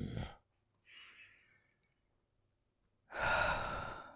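A man's breathy sighs close to the microphone: a faint, short exhale about a second in and a longer, louder sigh near the end.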